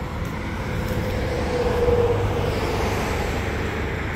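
A road vehicle driving past, a steady rush of traffic noise that swells a little through the middle and eases off.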